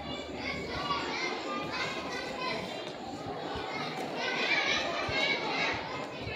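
Many children's voices chattering and calling out at once, overlapping and unintelligible, swelling louder between about four and six seconds in.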